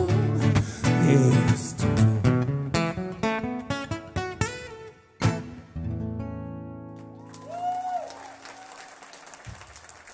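Acoustic guitar strumming the closing chords of a song, then one final chord struck about five seconds in that is left to ring and fade away.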